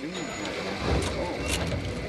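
Low rumble of a vehicle engine coming up about a second in, under background chatter, with one sharp click about one and a half seconds in.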